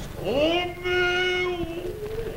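A man's voice in stylised kabuki chant, scooping up in pitch and then holding one long, steady note for about a second and a half.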